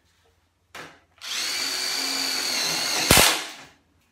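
Hilti SID 4 cordless brushless impact driver sinking a 13 mm pan-head self-drilling screw into steel stud framing: a steady high motor whine of about two seconds, ending in a short, louder burst as the screw drives home.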